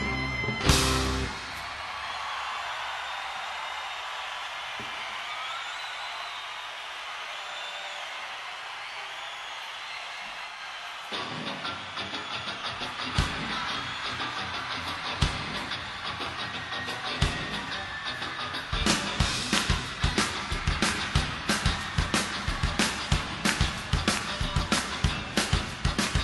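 Music: a loud rock track ends about a second in and gives way to a thin passage with no bass. A steady drum beat comes in about eleven seconds in, and the full band builds up from about nineteen seconds.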